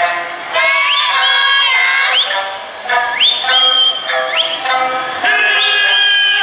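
Eisa music: a sung Okinawan folk melody, with several sharp finger whistles (yubibue) that swoop up to a high held note about once a second over it.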